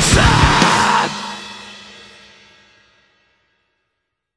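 Metalcore band playing loud with fast pounding drums, then stopping dead about a second in; the final chord and cymbals ring on and fade away to silence over the next two seconds.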